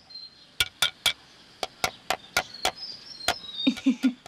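A hammer knocking in about a dozen sharp, irregular strikes during a repair job. Insects chirr faintly behind.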